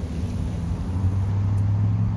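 Freight train of tank cars rolling away down the track, heard as a steady low rumble and hum.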